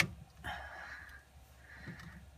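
A sharp crack as the 3D-printed part is forced loose from the glue-coated build plate by hand, followed by two short rushes of rasping noise.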